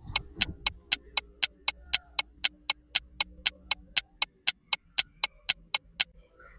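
Countdown timer ticking: short, sharp ticks at an even pace of about four a second, stopping near the end.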